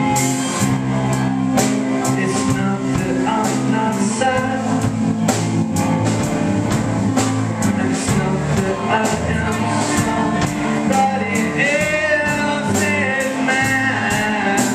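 A live band playing an instrumental passage with electric guitar, other guitars and a drum kit keeping a steady beat. Near the end, a lead line comes in with notes that bend in pitch.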